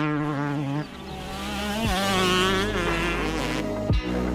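5-inch FPV racing drone's motors and propellers buzzing, the pitch swinging up and down as the throttle changes, with a dip about a second in and a rise again near the middle.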